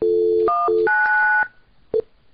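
Softphone dial tone followed by touch-tone (DTMF) key tones dialing 1999. A short 1 tone is followed by a longer stretch of 9 tones, with the dial tone returning briefly between them. The tones stop about a second and a half in, and a short tone blip comes near the end.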